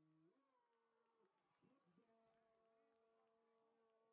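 Near silence, with only faint steady tones that shift in pitch a few times.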